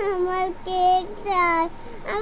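A young girl's high-pitched voice in three long, drawn-out, sing-song calls without clear words, the last one falling: whining.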